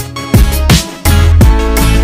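Electronic dance music with a heavy, sustained deep bass and a steady, driving drum beat.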